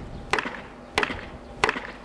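A wooden mallet striking a length of pine branch to wedge it firmly into a gap in a stone wall: three sharp knocks, evenly spaced about two-thirds of a second apart.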